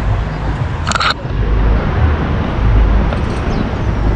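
Wind buffeting a camera microphone outdoors: a loud, gusty low rumble that swells and dips.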